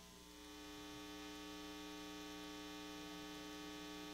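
Steady electrical mains hum on the audio feed: a stack of even, unchanging tones that comes up slightly in the first second and then holds.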